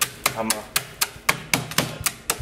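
Metal meat tenderizer mallet striking ice cubes wrapped in a tea towel on a cutting board, a rapid steady run of about four blows a second, crushing the ice.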